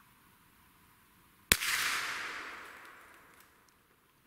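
A single .22 LR rifle shot at a hazel grouse in a birch, a sharp crack about a second and a half in, followed by a rushing tail that fades out over about two seconds.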